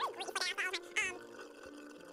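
A cartoon character's high-pitched, sped-up gibberish chatter, a rapid 'blah blah blah', that stops about a second in, leaving only a faint background hum.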